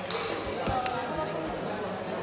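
People talking in a large, echoing sports hall, with a dull thud and a sharp click a little under a second in.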